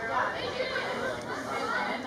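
Several voices talking and calling out at once, overlapping sideline chatter from spectators and players.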